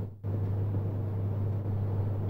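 Steady low hum, with no other distinct sound; it cuts out to near silence for a moment just after the start, then returns.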